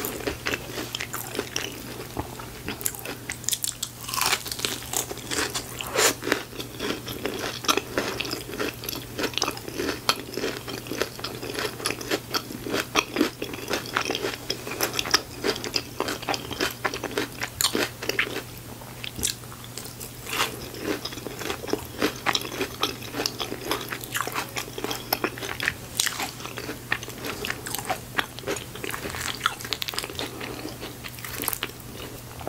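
Close-miked biting, crunching and chewing of crispy fried food and chili cheese fries, with dense irregular crackles and no pauses. A faint steady low hum runs underneath.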